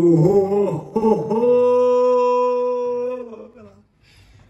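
A man's voice sings a short fanfare-like phrase, then holds one long steady note for about two seconds before it fades away.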